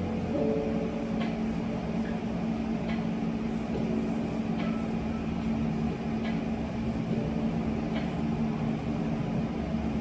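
Steady low hum with a rushing noise from a running machine in the room, with a faint short tick about every second and a half.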